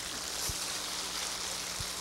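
Audience applauding in a hall, an even, steady patter over a low electrical hum, with a couple of soft thumps.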